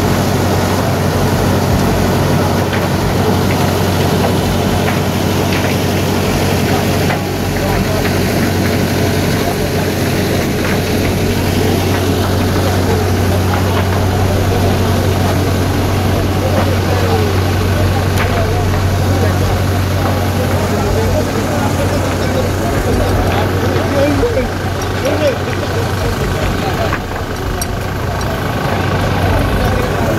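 Farm tractor's engine running steadily as it drives a pump, a constant low hum, with indistinct voices over it.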